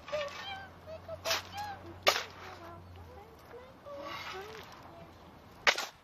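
Three sharp cracks, the loudest about two seconds in and near the end, over faint voices in the background.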